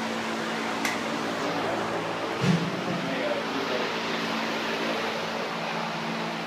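Steady hum of a ship's ventilation, with a constant low tone under it, and indistinct men's voices. There is a sharp click about a second in and a brief louder sound about halfway through.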